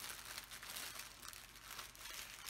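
Clear plastic bag of diamond-painting drill packets crinkling as it is handled by hand, in faint, irregular rustles.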